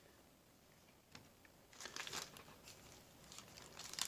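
Faint crinkling of a foil trading-card pack wrapper being handled, in short scattered bursts starting about two seconds in, after a near-silent first second.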